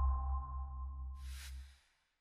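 Electronic broadcaster's sound logo under the Das Erste end card: a deep low tone with two high ringing tones fading away, and a short hissing whoosh near the end before it dies out.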